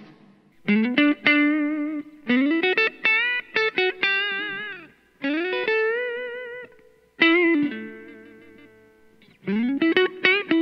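Paoletti Stratospheric Wine electric guitar played through an amp: short lead phrases of sustained notes, several slid up into and held with wide vibrato, with brief pauses between phrases.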